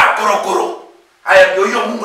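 A man preaching in a loud, animated voice, in two bursts with a short pause about a second in.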